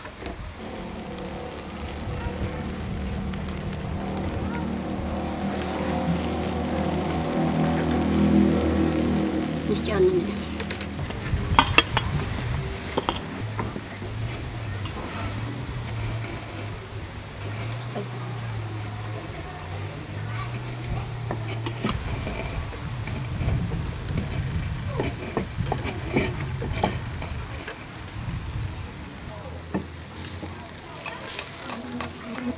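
Fish sizzling on a wire rack over a charcoal grill, with a few sharp clicks of metal tongs about twelve seconds in. A steady droning hum with several pitches swells and then fades over the first third.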